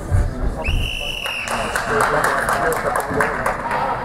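A thump as a fighter is thrown down onto the platform mat. About a second in, the referee's whistle gives one short, steady blast to stop the action. The crowd then cheers and claps.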